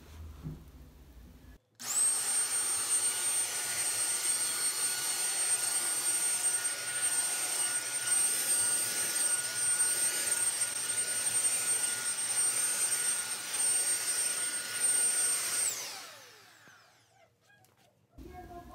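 Gravitti multi-cyclone corded stick vacuum switched on about two seconds in, its motor spinning up to a steady high whine while it is pushed over carpet. It is switched off near the end and winds down.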